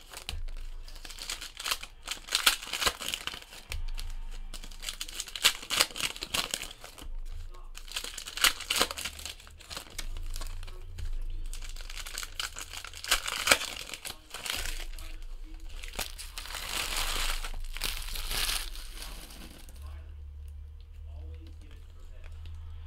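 Foil trading-card pack wrappers being torn open and crumpled by hand, in irregular bursts of crinkling with short pauses.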